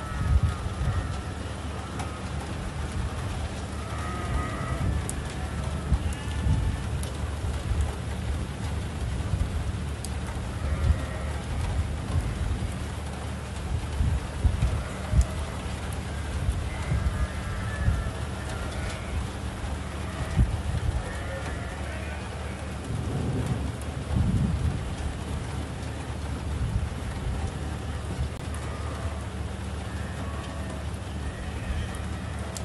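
Strong wind buffeting a phone microphone in a desert dust storm: a heavy, fluttering rumble with a steady hiss above it. Faint higher calls come through now and then.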